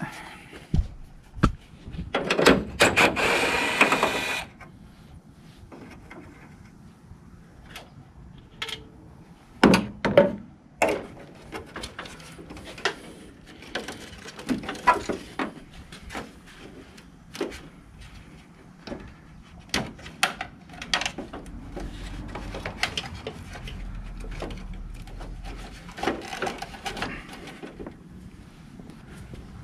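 A cordless drill runs for about two seconds, backing out a grille bolt. Scattered clicks and knocks follow as the plastic grille and trim are handled.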